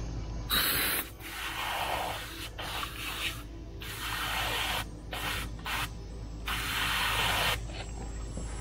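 Aerosol insecticide can hissing as it sprays into a gap at a yellow jacket nest, in a series of separate bursts of varying length, the longest about a second long near the end.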